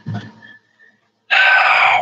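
A man's loud, strained voice about one and a half seconds in, after a short silence.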